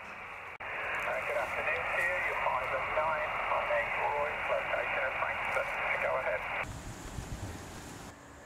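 Receiver audio from a portable HF transceiver's speaker on the 40 m band: hiss narrowed to a thin, telephone-like band, with warbling signals coming through it. A brief dropout comes just after the start. The received audio cuts off about two-thirds of the way in, leaving a low, rough outdoor noise.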